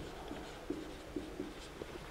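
Marker pen writing on a whiteboard: a few faint, short strokes of the tip against the board.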